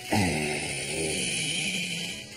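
Game-show audio from a television that has just come on: a crowd shouting drawn-out calls over steady cheering, starting suddenly.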